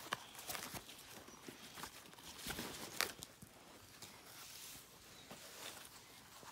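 Faint rustling and scattered light clicks of hockey pants and shoulder pads being handled and pulled on, with a sharper click about three seconds in.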